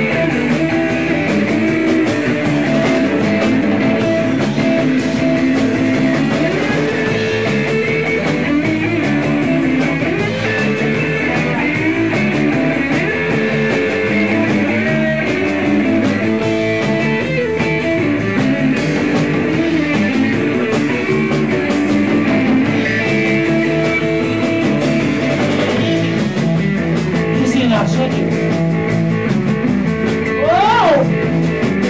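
Live rock band playing loudly without vocals: electric guitar leading over the drum kit, continuous throughout.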